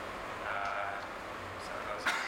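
A man speaking in conversation.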